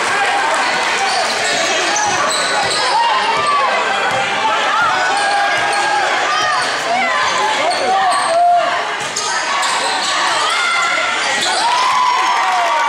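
Gym game sound in a large hall: a basketball being dribbled on the court, short sneaker squeaks, and spectators talking and calling out, all with the hall's echo.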